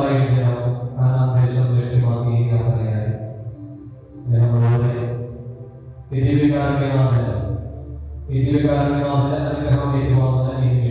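A man chanting a prayer in four held phrases of one to three seconds each, with short breaks between them.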